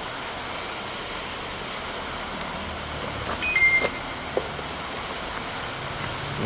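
Steady background noise with a few light plastic crinkles and taps from bubble-wrap packaging being handled around the middle, along with a brief high tone.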